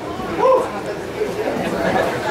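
Crowd chatter in a club room after the music stops, with one voice rising loudly about half a second in.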